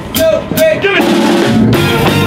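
Live blues band starting a song: a few sharp drum hits, then about a second in the whole band comes in together, with saxophone and trumpet over electric guitars and drum kit.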